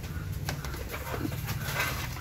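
Bird calls over a steady low rumble, with a sharp click about half a second in.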